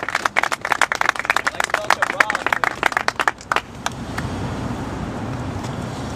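Small crowd applauding for about three and a half seconds, thinning to a few scattered claps. A low steady rumble is left beneath.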